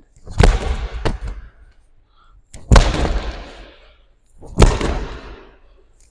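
Medicine ball thrown hard into a block wall three times, about two seconds apart, each hit a loud thud that echoes around the gym, with a smaller knock shortly after the first.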